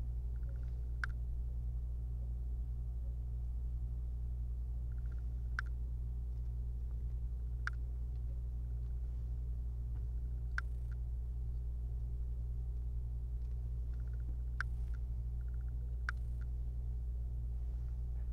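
Small screwdriver driving the tiny screws that hold a replacement laptop LCD panel in its lid: about six sharp clicks spread out, some after a brief run of fast ticks, over a steady low hum.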